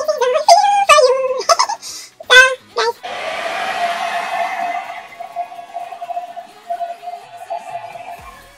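Handheld hair dryer switched on about three seconds in: a steady rush of air over a motor hum, softer after a couple of seconds as it is aimed at the wig's lace at the hairline to dry the glue spray. Before it, a few short voice sounds.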